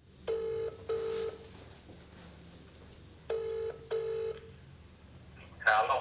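Telephone ringback tone heard over a speakerphone: two double rings, each a pair of short buzzing tones, the caller waiting for the other end to pick up. A voice comes in near the end as the call is answered.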